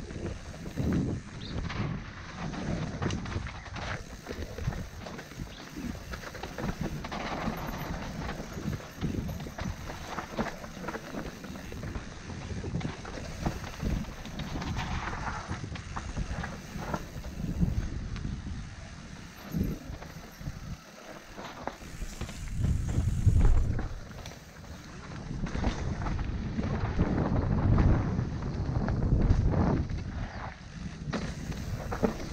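Mountain bike descending a dirt singletrack, heard from the rider's helmet camera: tyres rolling over dirt, rocks and roots, with the bike rattling and knocking over the bumps. Wind buffets the microphone in swells, loudest about two-thirds of the way in and again near the end.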